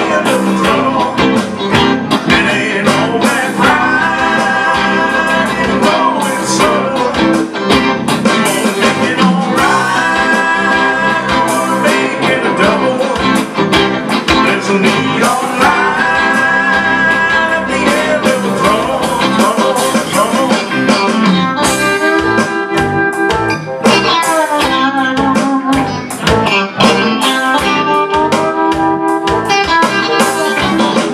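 A live country-rock band playing loud through the PA: electric guitar, bass guitar and strummed acoustic guitar over drums. It is an instrumental stretch, with long held, bending lead-guitar notes in phrases that come back about every six seconds.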